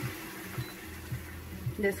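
Steady low hum and hiss of a running kitchen exhaust fan over a pot cooking on sauté.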